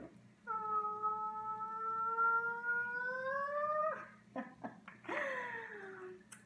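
A long, high, drawn-out vocal sound, held steady and then rising in pitch before it stops. A few soft clicks follow, then a shorter, breathier one.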